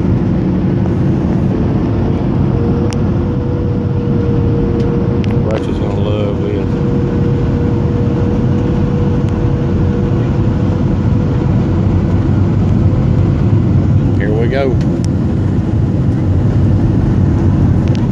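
Steady, loud cabin noise of a Southwest Airlines Boeing 737 in flight, heard from a window seat over the wing. It is a deep roar of jet engines and airflow, with a steady hum tone running through the middle of it.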